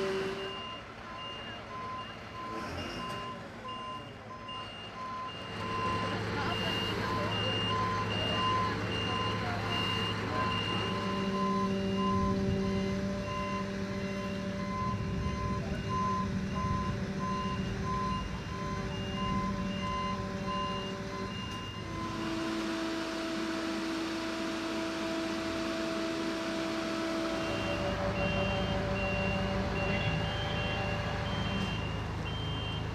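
A fire truck's electronic warning beeper sounds in a steady series of short beeps over its running diesel engine, whose pitch shifts several times. The beeping stops about two-thirds of the way through and starts again near the end.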